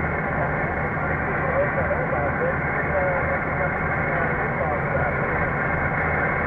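Single-sideband receive audio from an HF mobile transceiver's speaker: steady band static with a weak, faint voice of the distant station coming through, over the truck's road noise.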